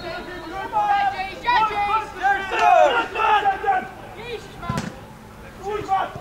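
Several voices shouting and calling out across a football pitch, then one sharp thump of the football being struck about three-quarters of the way through.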